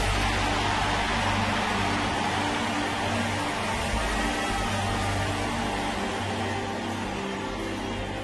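Sustained low keyboard chords under a steady, loud wash of noise that eases slightly toward the end.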